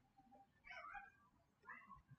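Near silence, broken by two faint, short animal calls, the first a little under a second in and the second near the end.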